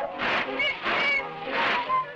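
Cartoon steamboat sound effects: a steady rhythm of hissing steam puffs, with a couple of short high whistle toots among them, over music.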